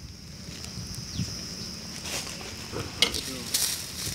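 A spoon stirring chicken in a clay pot over a wood fire, scraping and clicking against the pot over a steady sizzle; the stirring grows louder in the last second.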